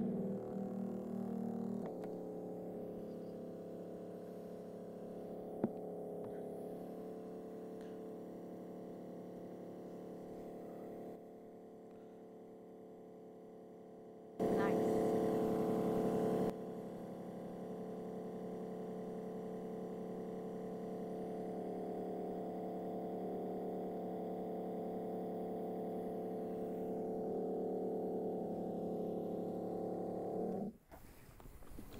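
Aircrete Harry foam generator running, with the air set to 42 psi: a steady electric pump hum as foam pours from the wand into the bucket. The hum is much louder for about two seconds midway, then cuts off suddenly at the very end.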